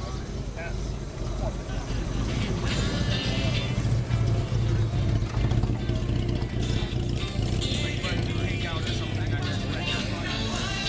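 The 1955 Jaguar roadster's 3.4-litre straight-six engine running steadily, getting louder for a few seconds in the middle, with voices around it.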